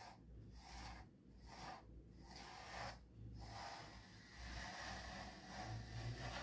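Pet grooming brush drawn through a dog's thick fur in repeated soft, scratchy strokes, about one a second.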